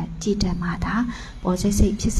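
A woman speaking Burmese into a handheld microphone, giving a Dhamma talk.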